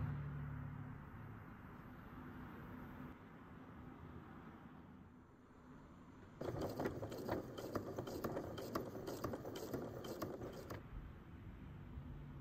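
Domestic sewing machine stitching, a fast run of needle strokes starting about six seconds in and stopping about four seconds later, as it sews a magnetic snap's clear plastic tab onto canvas. Before that there is only faint room noise.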